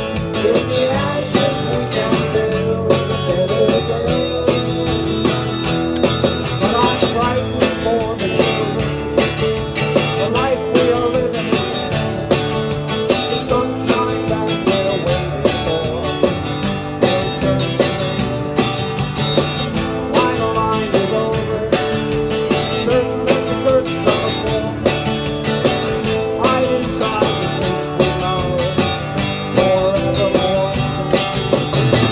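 Two acoustic guitars play an instrumental passage of a song, strummed to a steady beat.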